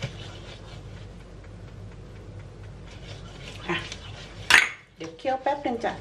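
A plastic spatula stirring and scraping thick sauce in a nonstick frying pan, with a sharper knock or clatter against the pan about four and a half seconds in.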